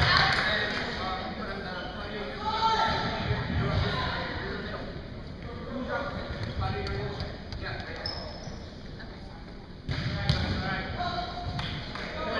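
Indistinct voices of players and spectators echoing in a school gymnasium, with occasional thuds of a volleyball on the hardwood floor; the sound gets louder about ten seconds in.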